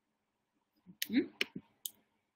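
Three sharp clicks about a second in, with a brief voiced sound rising in pitch between the first two.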